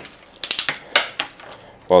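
Hard plastic parts of a poseable mecha action figure clicking and clattering as it is handled. There is a quick cluster of sharp clicks about half a second in, then two more single clicks around a second in.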